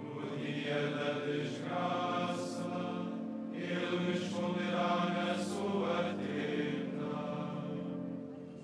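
Male choir chanting a psalm in long held notes, with a few sung consonants cutting through.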